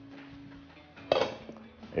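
A glass pot lid lifted off a large cooking pot and set down, with one sharp clatter about a second in.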